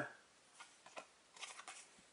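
A few faint ticks and rustles of paper stickers being handled and turned over in the fingers.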